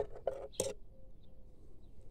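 Faint handling noise of a budwood stick in the hand: a few short clicks, the sharpest just over half a second in, then quiet background.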